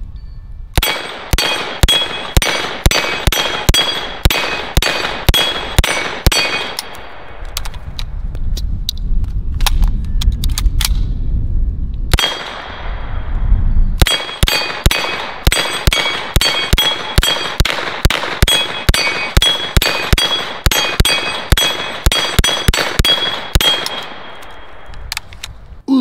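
Short-barrelled Uzi 9mm fired in two rapid strings of roughly three shots a second, split by a pause of about seven seconds. Steel dueling-tree plates ring with a steady metallic tone as they are hit.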